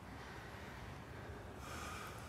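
Faint breathing of people close together, with a breath drawn near the end.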